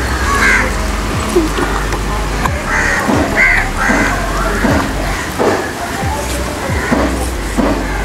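Background music with a steady beat, and a few short calls from about half a second to four seconds in.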